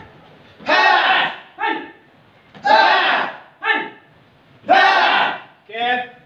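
A group of taekwondo trainees shouting together in time with a leg-raise exercise. There are three rounds about two seconds apart, each a long, loud group shout followed by a shorter single call.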